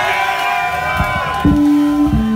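Crowd cheering and whooping, with a steady ringing tone over it; about one and a half seconds in, an electric bass guitar comes in with loud, low held notes as the first song starts.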